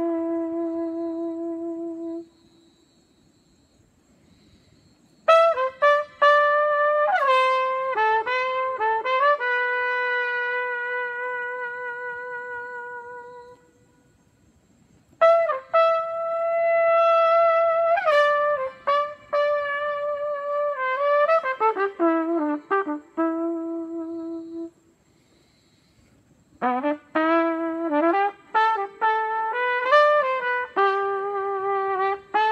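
Solo trumpet playing a slow, unaccompanied melody in long phrases of held notes, some swelling and fading away, with pauses of about two seconds between phrases.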